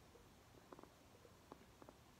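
Near silence with a few faint, quick clicks from a laptop being worked by hand: three close together about three-quarters of a second in, then a single click and a pair near the end.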